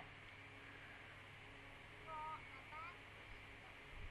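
Near silence over a video call, with a faint voice speaking briefly about halfway through.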